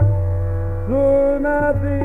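Hindustani classical khayal singing in raga Yaman Kalyan. A male voice glides up into held notes about a second in, over a steady tanpura drone and low tabla strokes.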